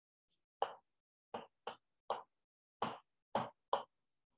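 Chalk writing on a blackboard: a run of about seven short strokes and taps, each a fraction of a second long.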